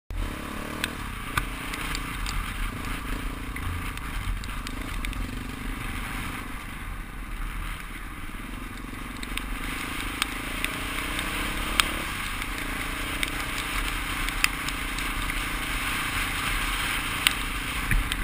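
Dirt bike engine running at low revs on a gravel track, its pitch shifting slightly with the throttle, over a steady hiss of tyres and wind and scattered sharp ticks of gravel.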